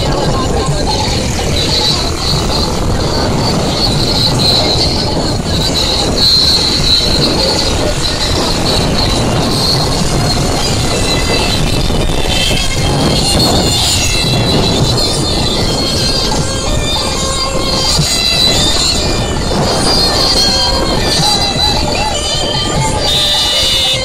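Loud, distorted, continuous mix of music and voices, with vehicle noise under it.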